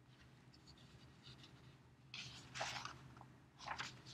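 Faint rustling, scraping noise, once about two seconds in and again briefly near the end, over a low steady hum.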